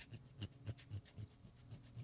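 Hand file rubbing on a freshly cast lead jig head in quick, short strokes, several a second, faint: deburring the sharp spot left where the sprue was cut off.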